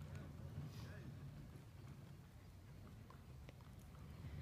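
Faint, soft hoofbeats of a horse moving on arena dirt, a few light knocks over a low steady rumble.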